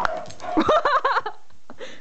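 A sharp knock as the dog snaps a ball into its mouth, then a short run of high, rising-and-falling vocal sounds from the dog lasting under a second.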